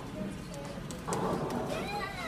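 A high, meow-like call that slides down in pitch, starting about a second in.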